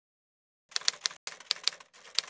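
Typewriter keystroke sound effect: a quick run of sharp clicks, about five a second, starting about two-thirds of a second in, with a short break a little past one second.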